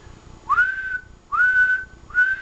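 A person whistling into a transceiver microphone: two whistles, each sliding up and then held on one steady note for about half a second. The whistle supplies the audio that drives a single-sideband transmitter to full power for an output test.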